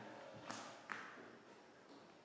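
Two sharp footsteps on a bare wooden floor, about half a second apart, each with a short echo from the empty room.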